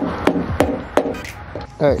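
A rubber mallet knocking a blind-nut insert into a hole in a pickup's tailgate: a few sharp knocks, about a third of a second apart, over the first second and a half.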